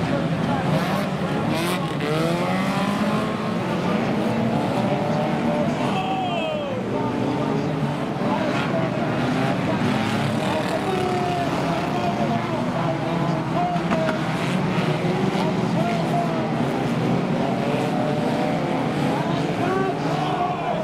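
Several banger-racing cars' engines running and revving together, their pitches repeatedly rising and falling and overlapping.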